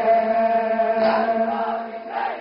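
Male voices chanting an Urdu noha (Shia mourning lament) through a microphone and loudspeakers, holding one long steady note that weakens near the end.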